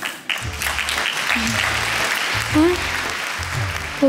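Audience applauding, starting just after the start, over background music with a slow, steady low beat.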